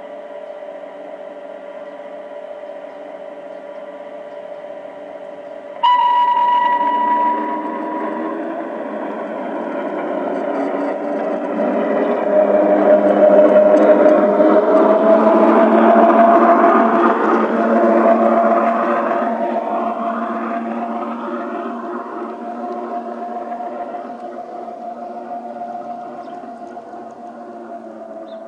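LGB garden-scale model of the RhB Bernina railcar 31, its onboard sound module playing electric-railcar sounds: a steady standing hum, a loud one-note signal about six seconds in, then a motor whine rising in pitch as the train pulls away. The wheels run on the track under it, loudest as the train passes close by about halfway through, then fading as it moves off.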